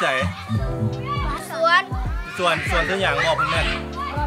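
A man and children talking over background music with a steady beat.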